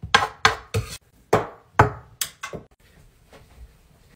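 A quick series of about seven sharp knocks and bangs over the first two and a half seconds, each dying away fast, then a quieter stretch.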